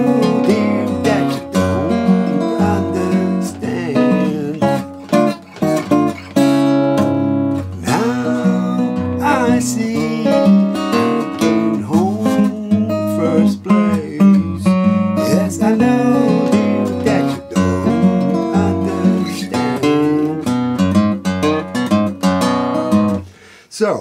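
Fingerpicked steel-string acoustic guitar, a 1986 Greven FX capoed at the second fret, playing a classic-era blues arrangement in the key of A. The busy picked notes run over a steady bass and break off about a second before the end.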